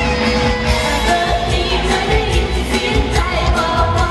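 A woman singing a pop song into a microphone over amplified band backing with a steady beat.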